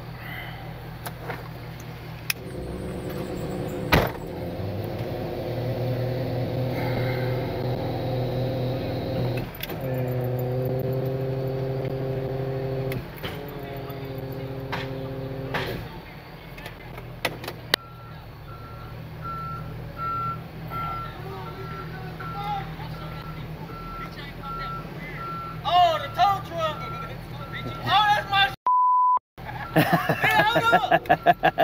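Rollback tow truck engine running with a steady hum, then the truck's backup alarm beeping evenly for about ten seconds as it reverses. Near the end, a short flat electronic bleep cuts in.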